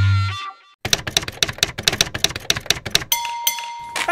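Intro music cuts off. After a brief gap comes a fast, even run of sharp clicks, about nine a second, like typing. In the last second a single steady ringing tone sounds.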